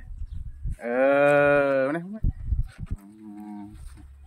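A cow mooing once: one long, steady call of a little over a second, starting about a second in.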